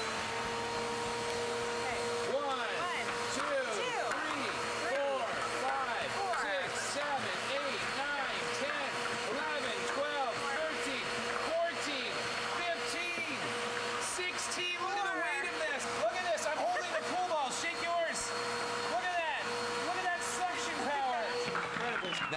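Two vacuum cleaners, a Shark Rotator Lift-Away and a competing upright, running at full suction with a steady high whine. The motors spin up at the start and wind down near the end. Over the whine come quick knocks and rattles of pool balls being sucked up clear extension tubes.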